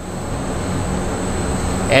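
Steady background machinery-type noise with a thin, constant high-pitched whine, swelling in over the first second.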